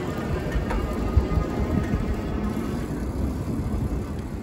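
Steady low rumble of riding a bicycle along a street: wind and road noise.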